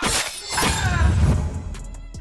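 A sudden crash, like glass shattering, over film-score music, followed by a deep rumble that fades before the end.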